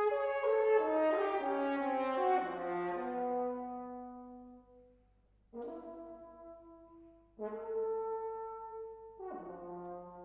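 Unaccompanied solo French horn: a fast run of descending notes that settles on a long low note, then after a short pause, held notes and another falling phrase, each phrase separated by brief silences.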